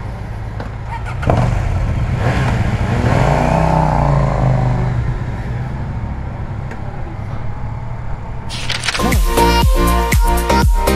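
A large 140-horsepower motorcycle engine running at idle, rising in pitch for a couple of seconds as it is revved a few seconds in. Electronic dance music with a steady beat cuts in about nine seconds in.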